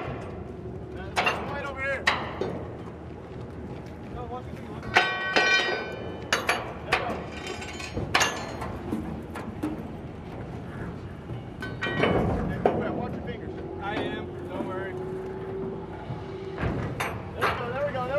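Metal clanks and knocks from the latching hardware and deck of a floating military raft bridge as its bays are joined, with voices calling. A steady hum holds for a few seconds past the middle.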